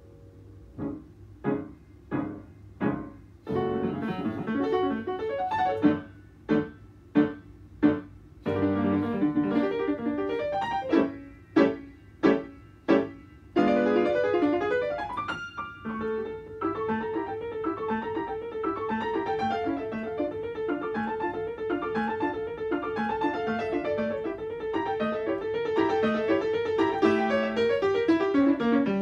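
Solo grand piano playing classical repertoire: detached, separately struck chords and short runs with brief gaps between them, then a continuous flowing passage from about halfway through.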